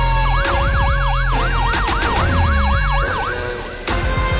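A police-style siren sound effect in a TV news theme, yelping quickly up and down about four times a second for about three seconds over the steady music. It stops, and the music dips and lands on a sharp hit near the end.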